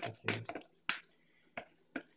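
A wooden spoon stirring a thick, wet mushroom mixture in a plastic bowl: a few separate sharp knocks and squelches with quiet gaps between them.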